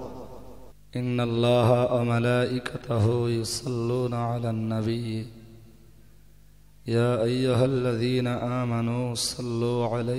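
A man's voice chanting a melodic religious recitation in long, drawn-out phrases. It begins about a second in, pauses for a moment past the middle, and resumes.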